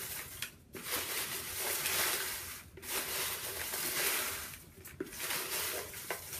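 Folded paper slips rustling as hands stir and dig through them in a plastic bowl, in several swells with brief pauses between.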